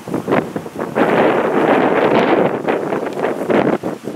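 Wind gusting across the microphone and rustling grass and pine branches, loud and steady from about a second in until just before the end.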